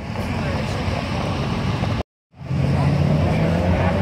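Steady low rumble of vehicle engines and outdoor street noise. The sound cuts out completely for about a third of a second midway, then the low engine hum resumes.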